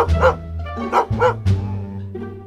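A dog barking in two quick double barks about a second apart, over background music.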